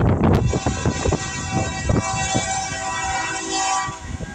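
Kansas City Southern diesel locomotive's air horn sounding one long blast of about three and a half seconds, which cuts off just before the end. Wind buffets the microphone throughout.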